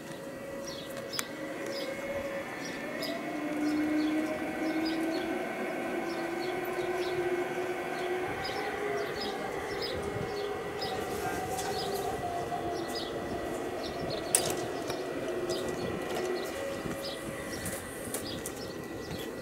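Electric motor and gear whine of LGB G-scale Rhaetian Railway model locomotives running slowly over garden-railway track, the whine slowly rising and falling in pitch as the train changes speed, with wheel rumble on the rails. Two sharp clicks come about a second in and again later on, and small birds chirp repeatedly in the background.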